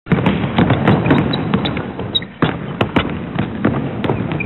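A basketball bouncing hard at an irregular pace, about three bangs a second, over a loud, dense crackling noise, with a few short high squeaks.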